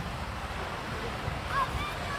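Wind rumbling unevenly on the microphone over a steady hiss of surf from the sea.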